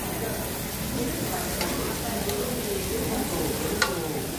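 Pork belly and beef slices sizzling on a Korean barbecue grill plate over a tabletop gas burner, a steady frying hiss. A single sharp click comes near the end.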